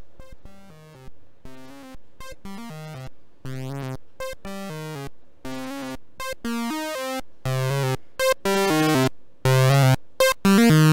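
SSI2131-based Eurorack voltage-controlled oscillator playing a simple looping sequence of low synth notes, each shaped by an envelope and VCA into a quick pluck that fades. The notes become louder, longer and brighter in the second half.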